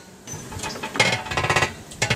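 A short burst of rapid metallic rattling about a second in, lasting under a second, from tool work at the car's wheel.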